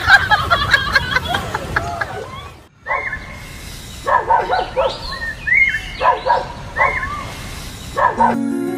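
Dog barking repeatedly, a string of short barks spread over the second half.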